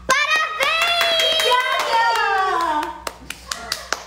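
A young woman's excited high-pitched squeal, held and wavering for about three seconds on receiving a gift. It is followed by a few sharp hand slaps near the end, as in pats on the back during a hug.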